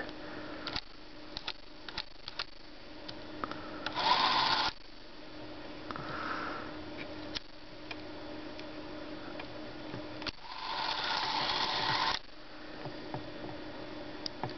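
Clicks of the run switch on a 1959 Bolex Paillard B-8SL 8mm camera being pressed over and over, with its spring-wound clockwork motor whirring twice: briefly about four seconds in, then for about two seconds near the end. The switch will not stay in the continuous-run position, so the motor runs only in short spurts.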